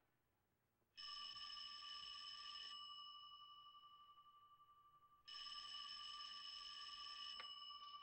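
Desk telephone bell ringing twice, each ring about two seconds long, with a lower tone lingering between rings. The second ring is cut off near the end by a click as the call is answered.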